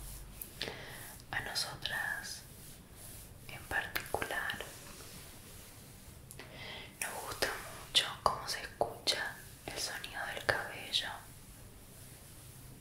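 Soft whispering in Spanish: a few short phrases with pauses between them, the longest near the end.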